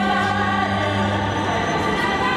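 Slow, sustained string music: a cello holds a low note under a higher line from a violin, and the low note drops away near the end.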